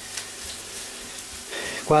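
Chopped onion and green pepper sizzling steadily in a nonstick pan as they are sautéed for a sofrito, with a few light scrapes and ticks of a wooden spatula stirring them.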